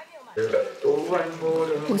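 Background music with a sung vocal line comes in about a third of a second in, after a short lull.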